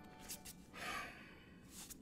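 A man's breathy sigh, one exhale about a third of the way in, with a few faint clicks around it.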